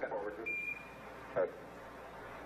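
Hiss of the Apollo 11 air-to-ground radio loop, with one short high beep about half a second in: a Quindar tone keying a transmission. A brief clipped voice fragment follows about a second later.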